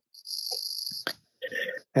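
Insects giving a steady, high buzzing trill that cuts off suddenly about a second in.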